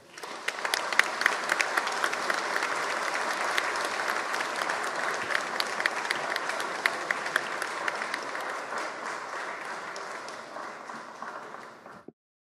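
Audience applauding, a dense steady clapping that begins right away and eases off a little near the end.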